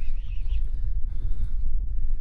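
Wind buffeting the microphone: a steady, fluttering low rumble, with faint higher rustles over it.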